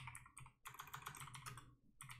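Faint typing on a computer keyboard: a quick run of keystrokes, thickest in the second half.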